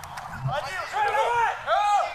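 Several short, high shouts from men on a rugby pitch during a tackle, starting about half a second in.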